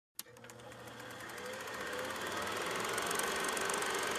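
A click, then a rapid, steady mechanical clatter that swells gradually, like a small motor-driven machine running.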